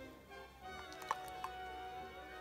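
Soft background music with long held notes, with two light clicks about a second in from the plastic jar being handled.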